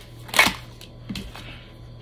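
A deck of tarot cards being shuffled by hand, with one sharp card snap about half a second in and a softer one a little after a second.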